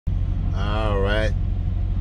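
A steady low rumble with an even pulse underneath. Over it, about half a second in, a man's voice draws out one sound for under a second.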